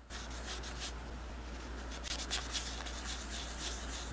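A cloth rubbing sewing machine oil into the black finish of a Singer 221 Featherweight's bed in a run of quick, irregular strokes, busier in the second half.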